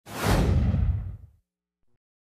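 A single whoosh sound effect with a low rumble beneath it, starting suddenly and dying away over about a second and a half, as an animated outro card appears.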